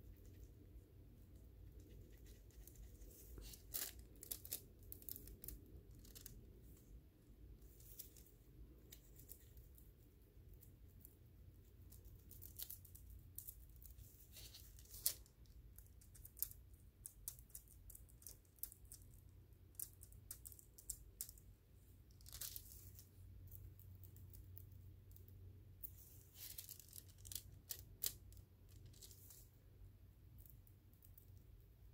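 Faint, scattered crinkling and crackling of a thin foil transfer sheet as it is pressed onto a painted rock with a brush and peeled back off it.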